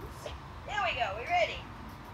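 A woman's voice making short wordless sing-song calls, the pitch swooping up and down, about a second in.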